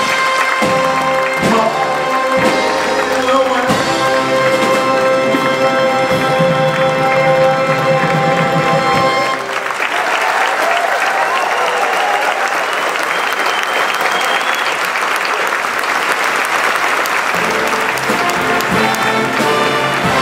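A live orchestra holds the final chords of a song, with a few drum strikes at the start. It cuts off about halfway through and the audience applauds. Near the end the orchestra starts playing again under the applause.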